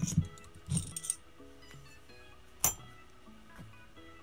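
Light metallic clinks of a hex key and small steel screws as the cylinder head of a Picco .21 nitro car engine is unscrewed and freed. There are a handful of clicks, the sharpest about two and a half seconds in, over background music.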